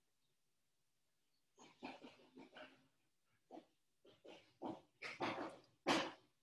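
Faint animal calls in the background: a run of about a dozen short, irregular sounds, starting about a second and a half in.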